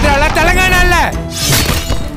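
Action film trailer soundtrack: dramatic music with a voice in long sliding tones, punctuated by a crash of shattering debris at the start and another hit about a second and a half in.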